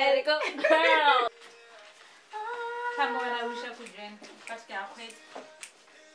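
A woman singing unaccompanied, loud and sliding in pitch for about the first second, then softer humming on long held notes.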